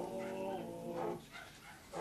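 A group of voices singing unaccompanied. They hold a note until about a second in, pause briefly, and start the next phrase at the end.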